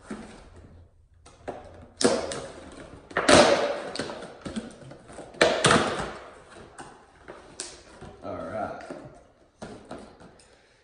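Clear plastic packaging crinkling and rustling as it is handled and pulled open by hand, with several sharp louder crackles a second or two apart.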